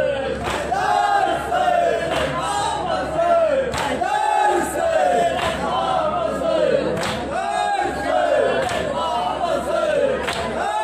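Group of men chanting a nauha (Shia lament) loudly in unison through a microphone, repeating short falling melodic phrases, with a few sharp beats at irregular intervals.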